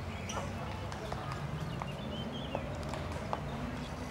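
Outdoor park ambience: indistinct voices of people nearby, with sharp irregular clicks like footsteps on hard paving.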